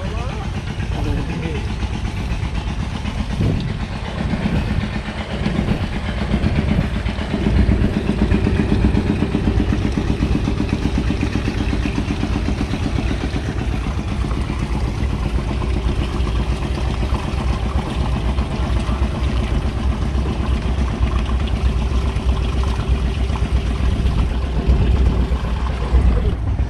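A small engine running steadily with a fast, even beat, growing louder about seven seconds in.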